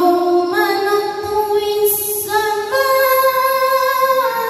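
A single voice reciting the Qur'an in melodic tilawah style, holding long drawn-out notes that step from one pitch to another.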